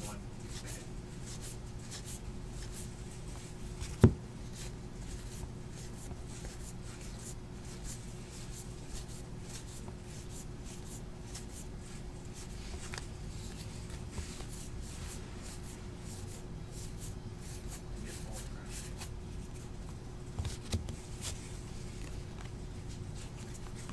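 Baseball trading cards being flipped through by hand, their edges sliding and flicking against each other over and over. There is a sharp knock about four seconds in, a couple of soft thumps near the end, and a steady low hum underneath.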